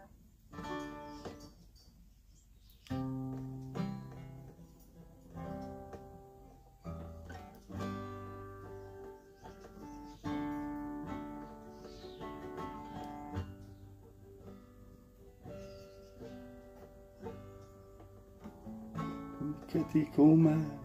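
Acoustic guitar strummed and picked, chords ringing and fading. After a short lull near the start, a new chord comes every second or two.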